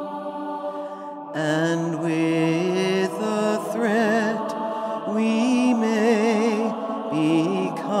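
Music: several layered voices singing long, wavering notes in a chant-like style. A held chord gives way to a moving melody about a second and a half in.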